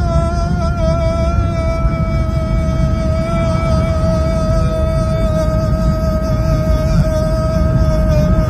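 A man's voice holding one long sung note without a break, steady in pitch with a slight wobble. Underneath is the steady low rumble of road noise inside the moving car's cabin.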